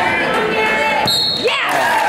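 Spectators shouting over one another. About a second in comes a short, high referee's whistle blast and a sharp slap of a hand on the wrestling mat, the signal that the bout has ended in a pin.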